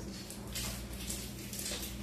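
Room tone with a steady low hum and a few faint light knocks and rustles from eating at the table.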